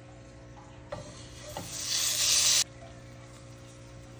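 Butter sizzling in a hot frying pan, a loud hiss of about a second that cuts off suddenly, after two knocks.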